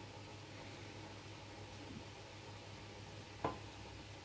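Quiet kitchen room tone with a low steady hum, broken once by a single short knock about three and a half seconds in.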